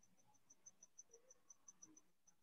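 Near silence with a faint, high-pitched chirp repeating evenly about six or seven times a second, like a cricket singing.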